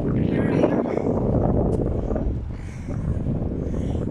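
Wind buffeting a phone's microphone: an uneven, rumbling noise.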